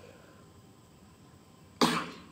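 A man coughs once, sharply, near the end of a quiet stretch.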